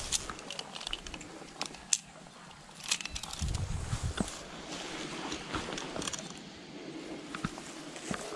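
Scattered clicks and rustling on a grassy riverbank, with a gust of strong wind buffeting the microphone about three and a half seconds in.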